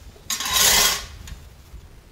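A hoe blade scraped once across a concrete floor, dragging dry leaves and debris, lasting well under a second.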